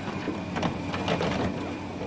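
A small machine running with a rapid, irregular clicking clatter.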